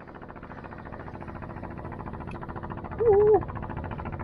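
Steady mechanical running with a fast, even pulse throughout. About three seconds in comes a brief, wavering hum from a person's voice, the loudest sound here.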